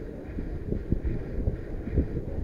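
Wind buffeting an outdoor camera microphone: an uneven low rumble with soft irregular thumps.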